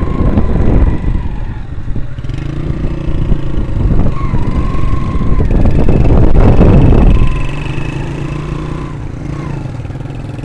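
Motorcycle engine running steadily while riding on a dirt track, with heavy wind buffeting on the microphone. The wind is loudest at the start and again around six to seven seconds in.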